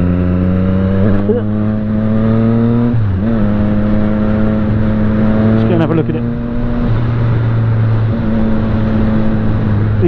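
Motorcycle engine running under way at a steady road speed, with wind noise on the microphone. Its note climbs slowly over the first three seconds, changes briefly around three seconds, holds steady, then drops a little near seven seconds.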